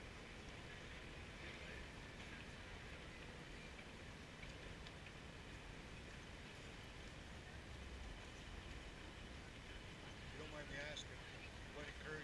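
Faint busy-street ambience: a steady low traffic rumble with snatches of passers-by's voices, which come through more clearly near the end.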